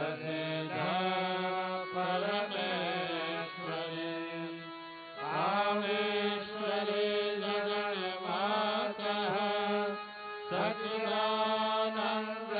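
Hindu devotional chanting of mantras during an aarti, sung in long melodic phrases with sliding notes. The voice breaks off briefly about five seconds in and again near the end before the next phrase.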